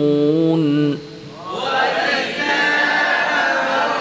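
A male reciter's voice holds and ornaments the last note of a Quran recitation phrase, cutting off about a second in. After a short pause, a group of voices chants the phrase back together in unison, as students repeating after the teacher.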